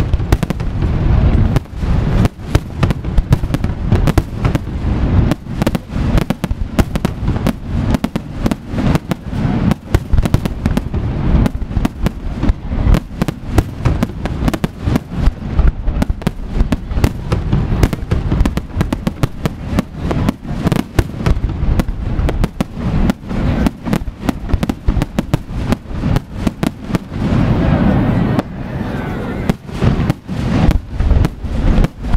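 Aerial fireworks display: a rapid, unbroken barrage of shell bursts and bangs, several a second, with crackling between them, growing denser near the end.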